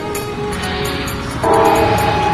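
Background music; about one and a half seconds in, a loud train horn sounds, several tones at once, and holds.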